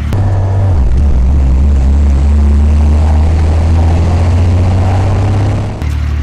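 Porsche race car driving at speed: a loud, steady, low engine drone that steps down in pitch about a second in and then holds.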